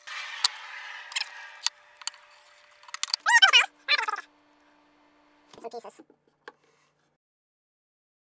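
Light clicks and knocks from wooden blocks and clamps being handled during a glue-up. A brief wordless vocal sound comes about three seconds in.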